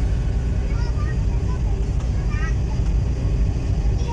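Steady low rumble of a RoRo ferry at sea, heard from its open deck, with faint voices about a second in and again near the middle.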